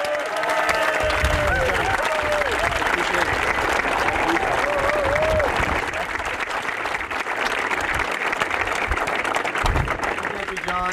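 Crowd applauding, with some cheering voices over the clapping in the first half; the applause eases off a little after about six seconds.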